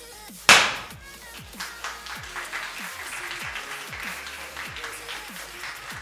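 A single loud bang about half a second in, a confetti cannon going off, followed by a crowd clapping. Electronic music with a steady beat plays throughout.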